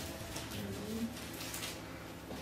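Sheets of paper rustling as they are handled, in a few brief crinkles, over faint low wavering voice-like sounds.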